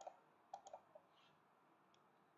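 Faint clicks of a computer mouse, about five in the first second, over near silence.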